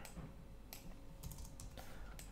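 Faint clicks of a computer keyboard, a handful of light keystrokes in the second half.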